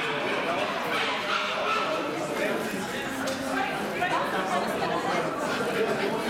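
Bull terriers barking and yipping amid the steady chatter of a crowd in a large hall.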